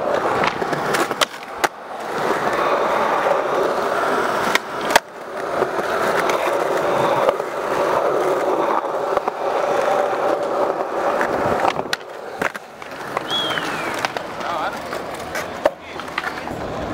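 Skateboard wheels rolling steadily over smooth concrete, broken several times by sharp clacks of the board striking the ground.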